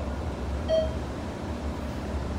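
Elevator's short electronic beep, sounding once about two-thirds of a second in, over a steady low hum as the car travels. It is one of a string of identical beeps coming every second and three-quarters or so, typical of an elevator's floor-passing signal.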